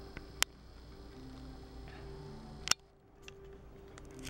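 Faint television audio playing steady low held tones, with two sharp clicks: one about half a second in and a louder one just under three seconds in.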